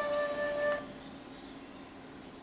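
Background music of steady held notes that cuts off suddenly less than a second in, leaving a faint hiss.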